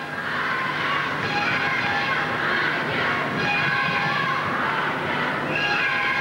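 Instrumental music accompanying a rhythmic gymnastics hoop routine: long held chords that shift every second or two.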